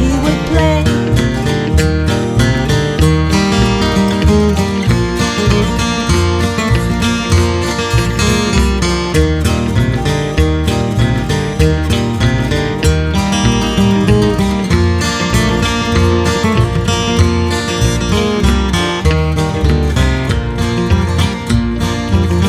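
Acoustic guitar instrumental break in a country song: a flatpicked lead melody over steady low bass notes.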